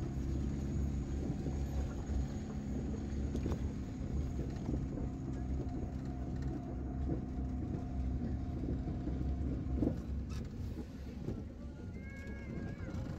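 Car driving slowly over a rough dirt road, heard from inside the cabin: a steady low engine and road rumble with scattered knocks and rattles from the bumps, one louder knock near the end.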